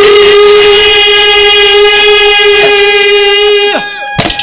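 Harmonium holding one long, steady note as ragni folk-song accompaniment, ending with a short falling slide and a drop in level just before the end.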